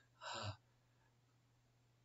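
A man's short hesitant "uh" about half a second in, then near silence with a faint steady low hum.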